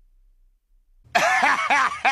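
A cartoon robot character laughing loudly in a quick run of 'ha-ha' bursts, starting about a second in after near silence.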